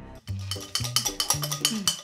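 Upbeat background music: a percussive beat of sharp clicks over short stepped bass notes, starting after a brief drop about a quarter second in.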